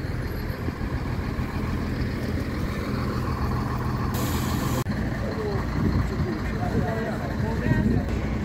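Fire engine running steadily at idle, its pump feeding a hose, with a brief hiss about four seconds in.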